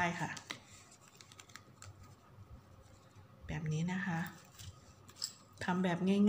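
A woman speaking Thai in short phrases, with faint scattered clicks and rustling between them from hands handling satin-ribbon coin ornaments.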